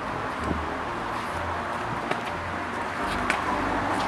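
Steady low rumble and hiss of outdoor background noise, with a few light clicks about two and three seconds in.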